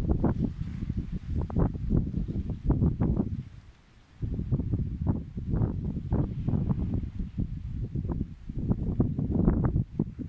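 Strong wind buffeting the microphone in gusts, a low rumble that drops away briefly about four seconds in.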